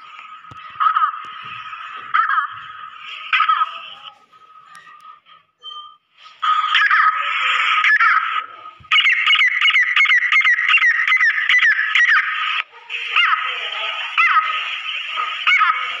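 Female grey francolin (teetar) calling: repeated call notes, softer at first, then louder after a short lull, with a fast rhythmic run of notes in the middle, over a thin steady high tone.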